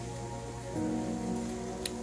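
Electronic keyboard holding sustained church chords under the sermon, changing to a new chord about a third of the way in.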